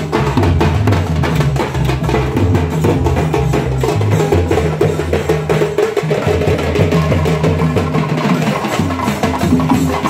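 A procession drum band playing a fast, dense rhythm of sharp stick strokes over booming low drum beats, steady and loud.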